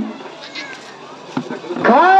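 A pause in a woman's amplified singing. A sung note trails off at the start, then comes a quieter gap, and near the end her voice slides upward into the next long held note.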